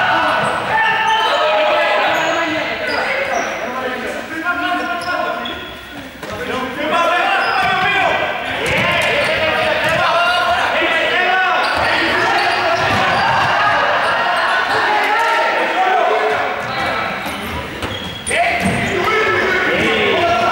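Balls bouncing and hitting the floor in a large sports hall, amid many overlapping young voices calling and shouting, all echoing in the hall.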